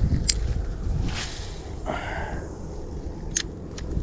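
Spinning rod and reel handled during a cast: a sharp click just after the start, a brief swish about a second in, and further clicks near the end. Low wind rumble on the microphone runs underneath.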